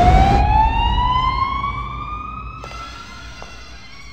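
A siren-like tone with overtones slides slowly upward over a low rumble, the whole sound fading away as it rises.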